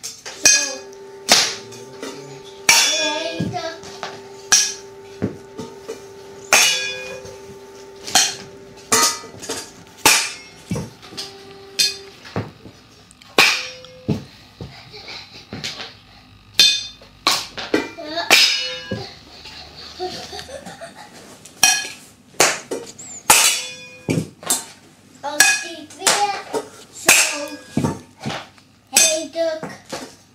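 Stainless-steel cooking pots and pan lids struck with a ladle and other kitchen utensils as a makeshift drum kit. The metallic clanks come in irregular flurries, several strikes a second.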